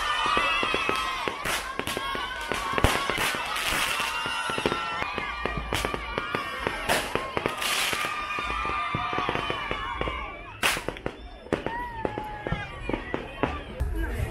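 Fireworks and firecrackers going off in a rapid, irregular string of sharp bangs and crackles. Crowd voices shout over them throughout.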